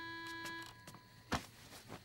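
Soft background music: a few held notes fading out in the first moments, then a single short knock about a second and a third in.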